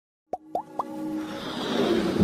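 Logo-intro sound effects: three quick rising plops about a quarter second apart, then a whoosh that swells toward the end.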